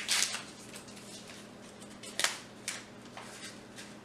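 A cereal sachet being torn open by hand: a short rip at the start, then a few sharp crinkles of the packet about two seconds in and after.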